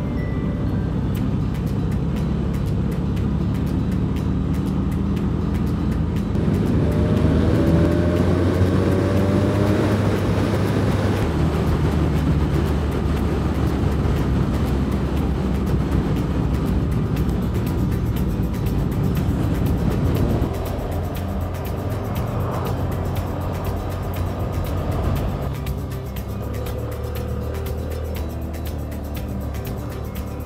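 Background music over a BMW F800R's parallel-twin engine and road noise while riding. The engine note rises through several seconds, about a quarter of the way in, as the bike accelerates.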